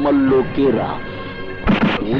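A man speaks briefly, then about 1.7 s in comes a single short, loud bang: a film-soundtrack sound effect over background music.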